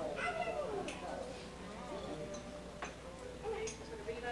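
Indistinct voices talking, with a couple of sharp clicks.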